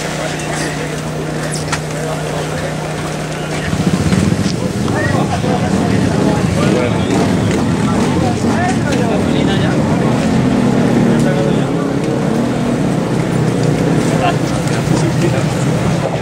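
Enduro motorcycle engine running with a steady idle, then louder and busier from about four seconds in, the pitch moving up and down as it is revved. Voices of people around can be heard over it.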